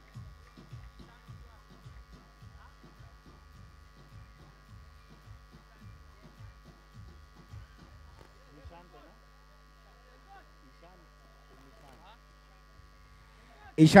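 Low-level steady electrical hum and buzz on the audio feed, with faint distant voices in the first part. A man's voice starts loudly right at the end.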